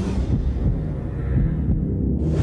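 A low, throbbing heartbeat sound effect in a car-trailer soundtrack, all deep bass with the brighter sounds dropped away.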